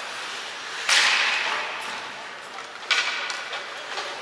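Ice skates scraping on the rink ice during hockey play: two sharp hissing scrapes about two seconds apart, each dying away quickly in the arena's echo.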